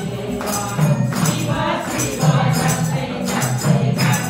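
A group of voices singing a devotional song together, accompanied by a steady rhythmic beat of jingling hand percussion.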